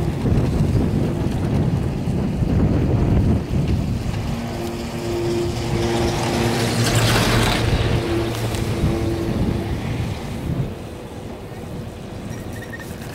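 Wind buffeting the microphone on a moving chairlift chair. As the chair passes a lift tower, the haul rope running over the tower's sheave wheels adds a hum and rumble that swells to a peak about seven seconds in and then fades.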